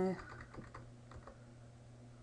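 Computer keyboard keys tapped in a faint, irregular patter, over a low steady hum.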